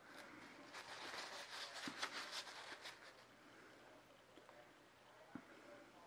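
Faint rustling and crinkling of a paper towel rubbed around the rim of a silicone mould, busiest over the first three seconds and quieter after, with a small soft knock near the end.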